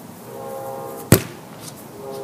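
A soccer ball kicked once: a single sharp thump about a second in, over background music.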